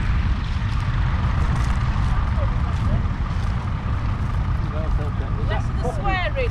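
Wind rumbling on the microphone in an open field, with voices starting near the end.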